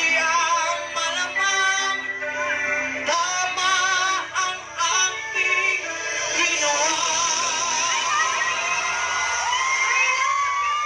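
A female singer singing into a microphone over backing music through a stage PA. In the second half she holds long notes with vibrato.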